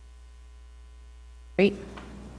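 Steady electrical mains hum on the meeting's audio feed, with one spoken word near the end.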